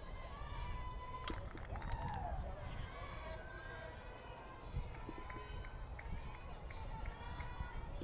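Faint, distant voices of players and spectators at a ballfield over a low steady rumble, with a couple of sharp knocks.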